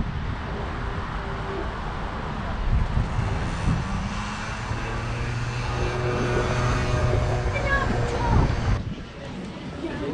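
Outdoor city traffic noise, with a steady low engine drone from about halfway through that cuts off abruptly near the end.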